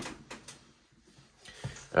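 Faint handling noises at a desk: a few light clicks and knocks, dying away to near quiet in the middle, with a couple more soft knocks just before the end.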